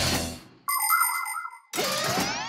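Cartoon transition sound effects: a whoosh that fades out in the first half-second, then a bright electronic ding held for about a second and cut off suddenly, then a rising sweep of sliding tones.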